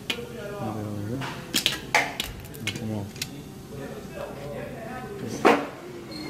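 Sharp metallic clicks and knocks from wheel-weight pliers gripping and prying a clip-on balance weight off the lip of an aluminium wheel rim, a few scattered strikes with the loudest near the end.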